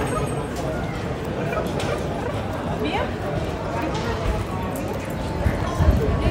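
Busy city street ambience: indistinct voices of passers-by over a steady traffic hum, with a few short animal calls and some low bumps near the end.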